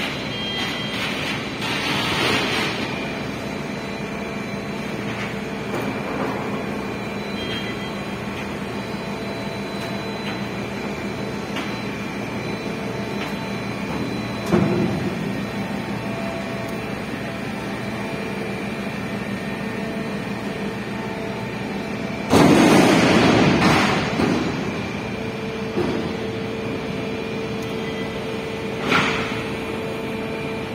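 Container crane machinery humming steadily while a spreader lowers a shipping container into a ship's hold. A short knock comes about halfway through. About two-thirds of the way in there is a louder metallic bang and rattle lasting about two seconds, with lighter knocks near the end.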